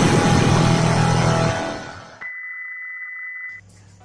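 The end of an electronic intro jingle: a loud noisy whoosh over a low bass line, fading out about two seconds in. Then a steady high electronic beep holds for about a second and a half and cuts off suddenly.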